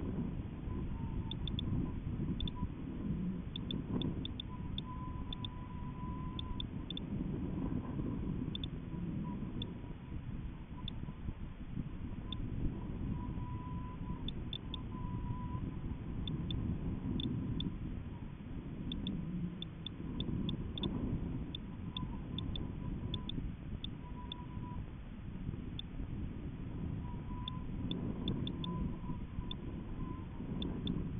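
Airflow buffeting the microphone of a camera riding a high-altitude balloon payload: a fluctuating low rumble, with a faint wavering hum and scattered light ticks over it.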